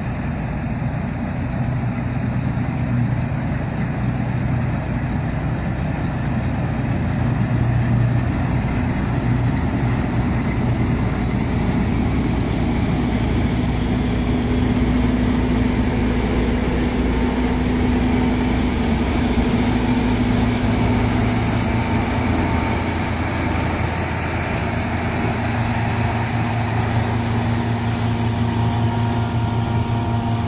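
Claas combine harvester cutting wheat with its V540 grain header: a steady engine and machinery hum, whose low tone shifts slightly in pitch about midway.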